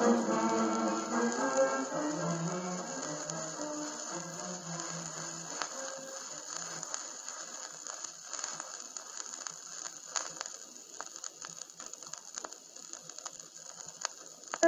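The last notes of a song die away over the first five or six seconds. After that, only the crackle and scattered clicks of a vinyl LP's surface noise remain, with a steady hiss, in the quiet groove between tracks.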